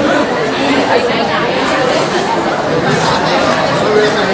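Indistinct chatter of several people talking at once, with no single voice clear enough to make out.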